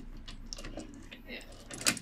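Small wooden toy train cars clicking and clattering as they are pushed by hand along wooden track, with a sharper knock near the end.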